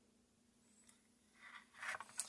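Near silence with a faint steady hum, then soft rubbing and scraping in the last half second or so as a hand turns a plastic model on its display base.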